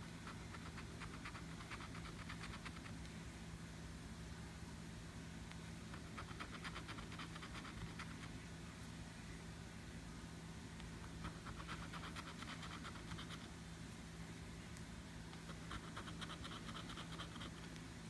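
A metal coin scratching the coating off a scratch-off lottery ticket, in four faint bursts of quick back-and-forth strokes with short pauses between them.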